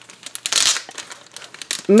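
A clear plastic document sleeve, with a paper packet inside, crinkling and rustling as hands press and open it. The loudest rustle comes about half a second in.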